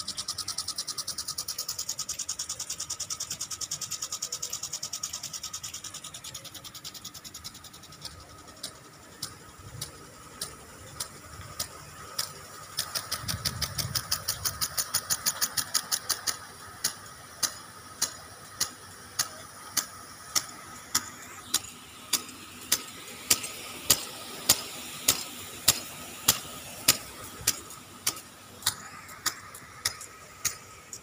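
Impact sprinklers watering a grass football pitch, ticking as they turn: a rapid run of ticks for the first six seconds or so, then slower, even ticks a little under twice a second, over a soft hiss of spray.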